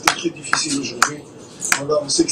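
Audio of a televised football match playing: stadium crowd noise and voices, with four sharp clicks about half a second apart.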